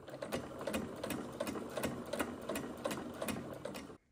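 Domestic electric sewing machine running at a steady speed and stitching a folded rolled hem, a rapid, even run of needle strokes.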